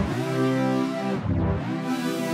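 A sustained pitched instrument line played through the Ghammy granular pitch-shifter set an octave up. Its pitch swoops twice, once at the start and again about halfway through, as the effect bends the pitch.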